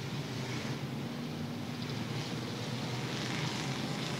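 Race car engines heard from a distance as a steady low drone under a hiss, as the field circles the oval at pace speed.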